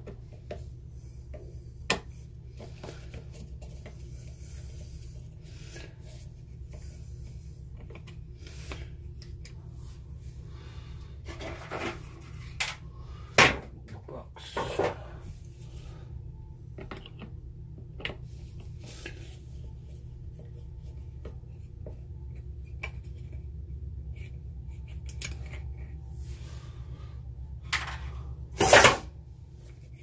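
Small screwdriver clicking and scraping on the screws and plastic blanking plate of a solar charge controller while a screw is worked out, over a steady low hum. A few louder knocks come in the middle, and a short loud burst comes near the end.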